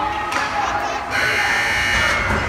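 Ice rink's scoreboard buzzer sounding about a second in and running for about a second, a steady harsh electronic buzz, over voices in the rink.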